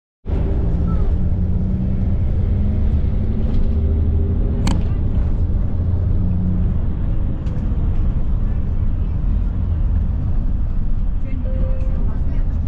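Low, steady rumble of a vehicle driving along a city street, with one sharp click a little under five seconds in.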